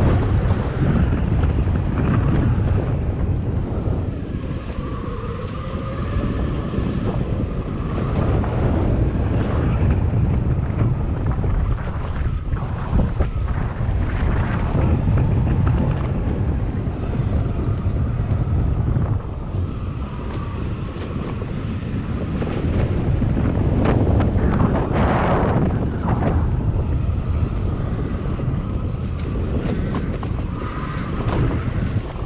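Wind buffeting the microphone of a camera riding on an electric mountainboard, over a steady rumble from the board's wheels rolling on a dirt trail. A thin pitched whine rises and falls now and then, as the board speeds up and slows.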